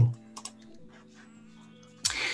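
A few soft computer keyboard clicks, then a faint steady tone at several pitches held for over a second.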